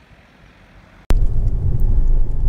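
Steady low rumble of a Honda Civic's 2.2 i-DTEC four-cylinder turbodiesel and the road, heard from inside the cabin as the car is driven. It starts abruptly about a second in, after a faint first second.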